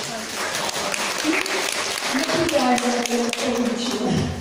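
Audience applauding at the end of a speech, with voices talking over the clapping in the second half.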